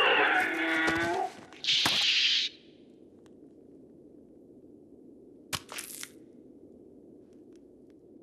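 Dinosaur fight sound effects. A creature's cry with wavering pitch and a few knocks over the first second, then a loud crunching hiss about two seconds in. After that a low steady rumble, with two sharp cracks near six seconds.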